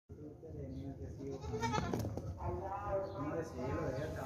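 Nagra goat kids bleating, several wavering calls one after another, with a few sharp knocks about two seconds in.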